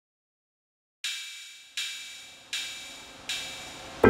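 A four-beat percussion count-in: four even, bright ticks about three-quarters of a second apart, each ringing briefly, starting about a second in and leading into the backing track.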